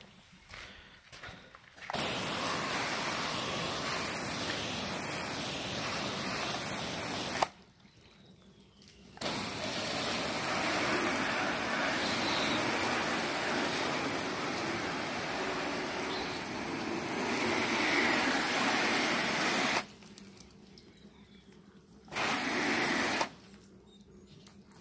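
Water spray hissing against a car's body panels in three spells that start and stop sharply: from about 2 s to about 7 s, a long spell from about 9 s to about 20 s, and a short burst near the end.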